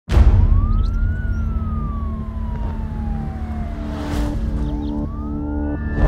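Emergency vehicle siren wailing over a low city traffic rumble: one rise, a long slow fall, then a rise again near the end. Low held music tones come in about halfway through.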